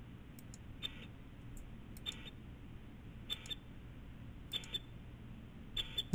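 Computer mouse clicking about once a second as the tuning level is stepped up, over a faint steady low hum.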